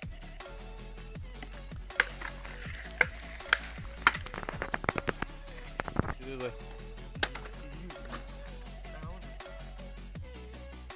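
Machete blade striking green bamboo in sharp single knocks, then a quick run of rapid knocks, over steady background music.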